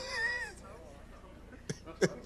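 A person's high, falling vocal sound, the tail of a laugh, in the first half second, then a quiet room with two faint clicks near the end.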